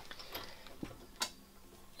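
A few faint metallic clicks as a parking-brake cable and its return spring are hooked onto the lever of a Wilwood brake caliper.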